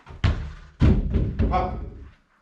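A football kicked, then a louder thud a little over half a second later as the ball strikes the small box goal, with rattling and knocking from the impact dying away over the next second.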